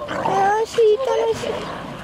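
Dogs vocalizing in play: a few short whining, yowling calls that bend in pitch, mostly in the first second and a half.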